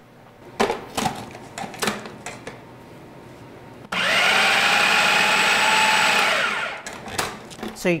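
Plastic clicks and knocks as the food processor's lid and feed tube are fitted. About four seconds in, the motor starts suddenly with a loud steady whine, chopping beet-burger mixture finer. It runs for about two and a half seconds and then winds down, followed by more lid clicks.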